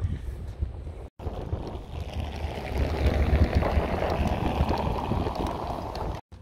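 Wind buffeting the microphone, a rushing, rumbling noise that grows stronger in the second half.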